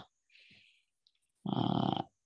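A pause in a man's speech, then, about one and a half seconds in, a short, steady drawn-out voiced sound, a held hesitation sound before he speaks again.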